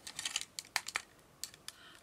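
Light clicks and taps of hard plastic parts on a Transformers Masterpiece MP12G Lambor figure being handled and unhooked: a quick run of small clicks at the start, then a few single sharp clicks.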